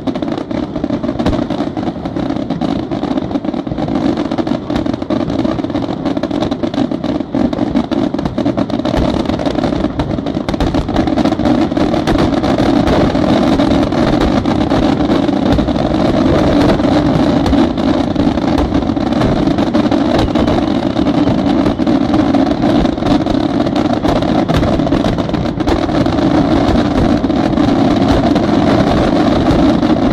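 Pirotecnica San Severo aerial firework shells going off in a dense barrage, bursts following so closely that they merge into a continuous rumble with crackle; it grows louder about a third of the way in.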